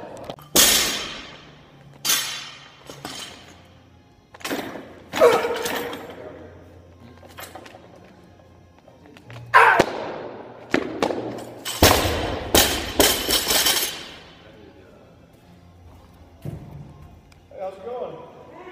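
Loaded barbell with rubber bumper plates in an Olympic clean and jerk: the plates clack and rattle as the bar is pulled and caught, then the bar is dropped from overhead onto the lifting platform. It lands with a heavy thud and bounces several times, the plates rattling.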